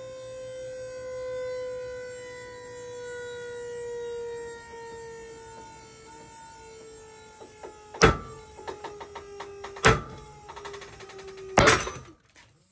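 Pull-test rig's motor whining steadily as it tensions a rope, its pitch slowly sinking as the load on a wrongly tied alpine butterfly knot builds. From about eight seconds in come sharp cracks and clicks, with the loudest crack near the end as the loaded rope lets go and strikes the camera.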